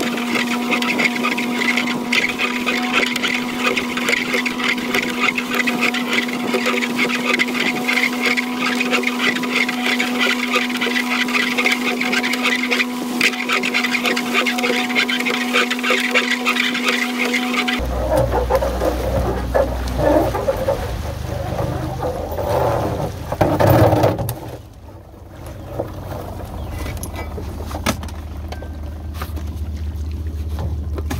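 Small Suzuki outboard motor running at a steady low speed, with water churning in its wake. About 18 seconds in, the sound changes abruptly to a deeper rumble with wind on the microphone, and there is a loud bump near the 24-second mark.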